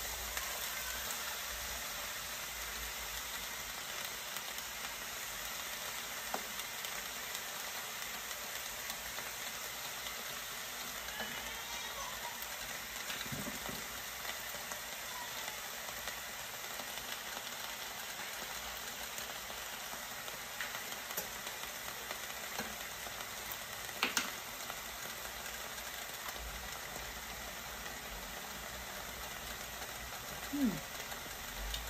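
Diced vegetables sizzling steadily as they fry in a large pan, with an occasional knock and a sharp double knock about three quarters of the way through.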